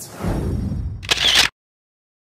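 Handling noise from a hand gripping the recording device right over its microphone: a low rumbling rub, then a louder rustle near the end, before the sound cuts off suddenly about a second and a half in.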